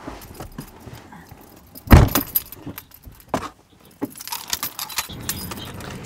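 A car's driver's door shuts with a heavy thump about two seconds in, followed by clicks and a bunch of keys jangling as they are brought to the ignition.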